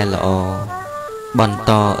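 A male voice singing a slow Khmer Buddhist song in long, wavering held notes, with a short break a little past the middle, over instrumental accompaniment.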